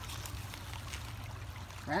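Shallow creek water trickling over stones: a steady rush with faint little ticks.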